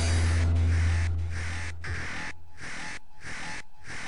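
Electronic free-party tekno: a long, deep, loud bass note, then a harsh noisy texture chopped into a steady rhythm of about one and a half pulses a second.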